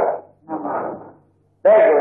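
Only speech: a Buddhist monk preaching in Burmese, in short phrases with a brief pause just past the middle.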